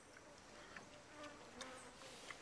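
Near silence: faint forest ambience with a steady high buzz of insects and a few faint soft ticks.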